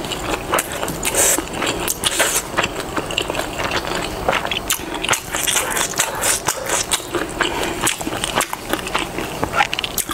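Close-miked chewing of food, with many small, irregular clicks and crackles from the mouth.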